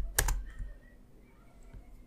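Computer keyboard keystrokes: two quick, sharp key presses at the very start, then only a faint click or two.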